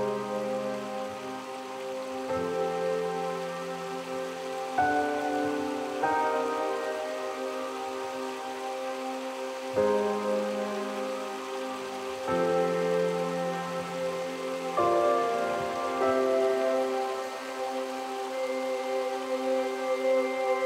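Background music of slow, sustained chords that change every few seconds.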